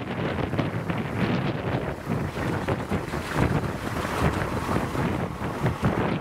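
A small 600 mm narrow-gauge locomotive running as it pulls its passenger car along, with wind buffeting the microphone over the engine's low rumble.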